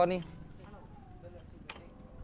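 A man's short spoken word, then low outdoor background with a faint far-off voice and a single sharp click near the end.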